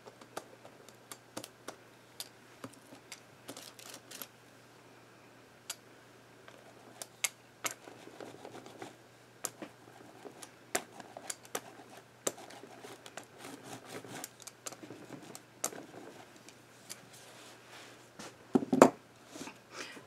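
Hand-held rubber brayer rolled back and forth over a journal page, transferring its leftover acrylic paint: soft rolling passes with many scattered small clicks, and one louder knock near the end.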